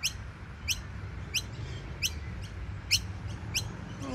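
Noisy miner chicks giving repeated sharp, high-pitched begging calls, one roughly every two-thirds of a second, calling for their parents.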